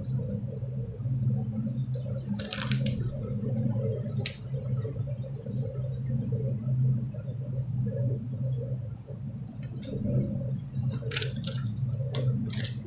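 A low, steady hum fills the room, with a few brief rustles and clicks as the pages of a book are handled.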